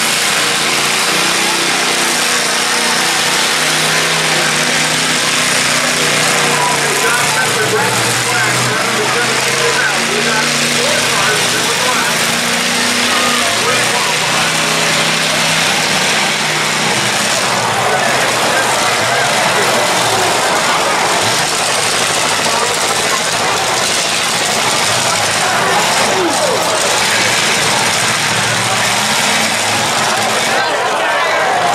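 Demolition derby car engines running and revving, their pitch stepping up and down, over the chatter of a crowd. The engine sound thins out past the middle, leaving mostly crowd noise.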